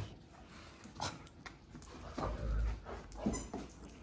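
Great Danes nosing through a wooden box of plush dog toys: scattered rustles and knocks, with a dull low thump a little over two seconds in.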